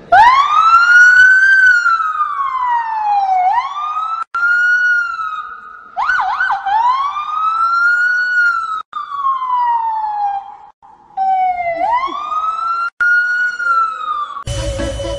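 A boy imitating a police siren with his voice, loud and clear. There are about four wails, each swooping quickly up and then sliding slowly down, with short breaks between them.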